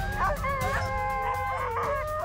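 Several harnessed sled dogs (huskies) howling together before a run, their long, held voices overlapping and gliding gently in pitch.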